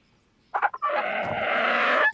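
Cartoon pterosaur's sad vocalisation: a short whimper about half a second in, then a longer raspy cry that grows louder.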